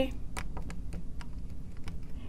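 Marker tip writing on a glass lightboard: a run of light, irregular ticks and taps as the letters of a word are written.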